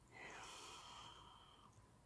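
Near silence, with one faint breath from a woman lasting about a second and a half.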